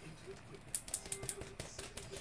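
Computer keyboard being typed on: a quick, irregular run of about ten light clicks, starting under a second in.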